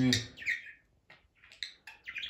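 Budgerigar giving a few short, separate chirps.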